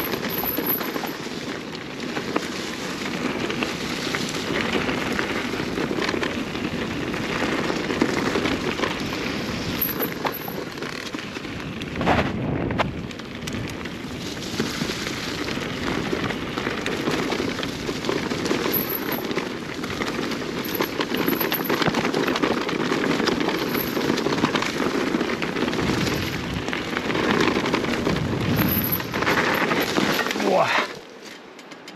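Cube Stereo Hybrid 160 SL e-mountain bike rolling fast downhill over a rough trail: continuous crackling and rattling of tyres on stones and dirt, picked up by a chest-mounted action camera. There is one louder knock about twelve seconds in.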